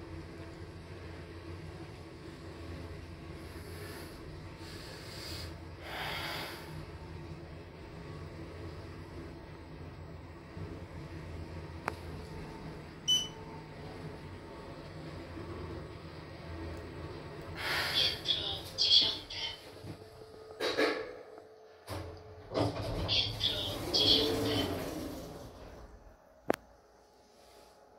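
Schindler 3300 elevator car travelling down with a steady low hum, and a short beep about halfway. The hum dies away about three quarters of the way through as the car stops, followed by a string of louder clatters as the doors open near the end.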